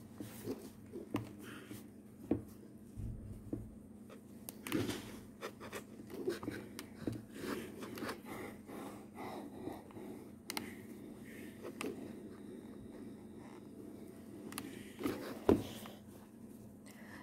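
Steam iron sliding and rubbing over crochet lace on a cloth-covered ironing surface, with scattered light knocks and taps as the iron is set down and the lace motifs are handled.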